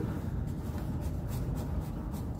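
Hands handling the black plastic housing of an Adey MagnaClean magnetic filter: light rubbing and a few faint clicks, over a steady low background rumble.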